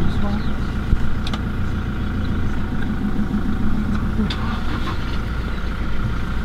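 Game-drive vehicle's engine idling steadily, with a sharp click about a second in.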